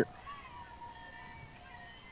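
A short lull in radio sports commentary: faint background sound from the broadcast microphone, with a thin held tone that bends a little at first and then stays steady.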